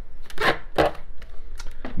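Scraping and a few light clicks and knocks as a 6-litre PerfectDraft beer keg is turned on its seat inside the machine.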